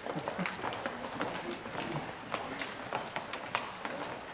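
Many people's shoes and heels clicking irregularly on the stage floor and risers as a group files into place, many steps overlapping, with low murmuring underneath.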